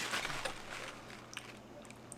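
A steady low hum of room tone, with a few faint clicks from a small bottle of hot sauce being handled.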